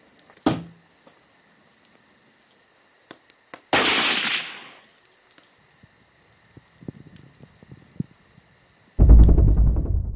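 Horror-film sound design: faint steady high tones with fine ticking, a sharp knock about half a second in, and a loud hissing rush at about four seconds that fades over a second. Near the end a loud, deep, pulsing music cue comes in.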